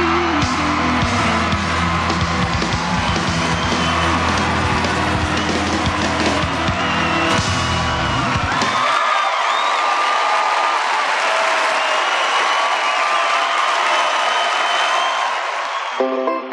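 A live country band with electric guitars and bass plays the close of a song, stopping just over halfway through. A crowd cheers over the final bars and keeps on cheering and clapping after the band stops, until the sound cuts off suddenly at the end.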